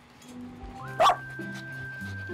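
A small dog gives one sharp yap about a second in, begging for food being handed out, over background music with long held notes.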